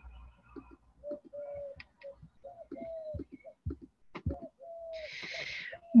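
Faint pigeon cooing: a run of short low calls, several sliding down in pitch at their ends. A short hiss comes near the end.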